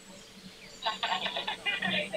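Voices of the people on a video call coming through a phone's small speaker, thin and hard to make out, starting about a second in.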